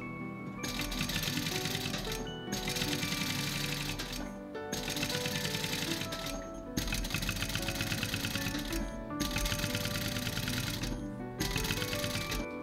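Mitsubishi LY2-3750 industrial flat-bed sewing machine stitching a zipper onto cowhide leather. It runs in rapid bursts of needle strokes lasting a second or two, stopping and starting about six times, over background music.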